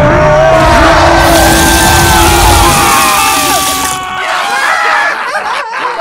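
Layered animation sound effects: a loud rumbling crash with a hiss of scattering debris, mixed with yelling, screaming voices and music. The rumble drops away in the middle of the clip, and the whole mix thins out about four seconds in.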